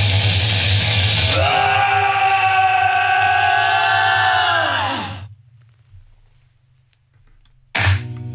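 Heavy metal song ending on a male singer's long held, high sung note over a sustained backing chord, lasting about three and a half seconds and dipping in pitch as it stops. A few seconds of near silence follow, then a short loud burst of sound near the end.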